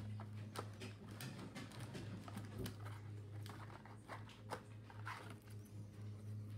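Light, irregular clicks and rustles of a plastic card sleeve and rigid toploader as a trading card is slid into them by hand, over a steady low hum.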